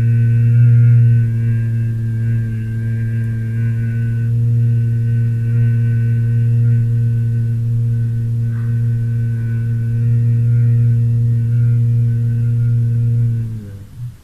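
A man humming one long, steady, low 'mmm' on a single out-breath in Bhramari (humming-bee) pranayama, holding one pitch throughout. The hum dips slightly in pitch and stops near the end.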